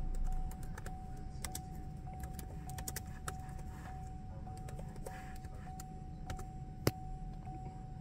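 Scattered computer mouse clicks, with one sharper click about seven seconds in, over a faint steady high whine and low hum.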